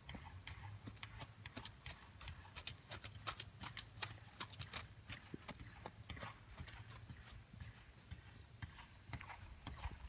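Hoofbeats of a ridden horse moving over a gravel ring: a run of irregular sharp strikes on the stony footing.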